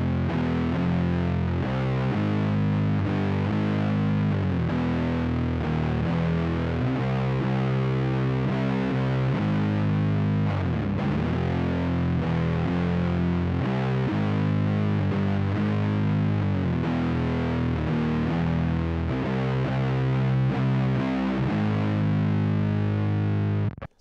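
Heavily distorted electric guitar in C standard tuning playing a slow doom metal riff in F minor, with a low open string ringing beneath notes that change every second or so. It cuts off suddenly near the end.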